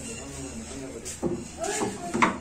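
Faint voices of people talking, with a short knock about a second and a quarter in.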